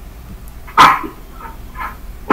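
A dog barking once, loud and sharp, about three-quarters of a second in, followed by two much fainter short sounds.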